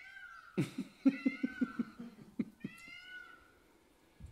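A cat meowing three times, short high calls, while a person laughs in a quick run of short bursts from about half a second in.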